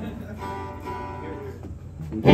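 Amplified hollow-body electric guitar, struck notes left ringing quietly and slowly fading while the guitar is being tuned.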